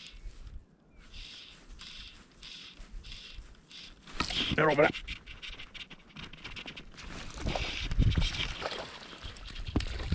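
Fly line being stripped in by hand through the rod guides in short, even pulls, about two a second. A brief wavering pitched vocal sound comes about four and a half seconds in, and low rumbling handling noise on the rod follows in the second half.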